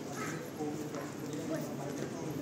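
Background voices of people talking, indistinct, at a steady moderate level.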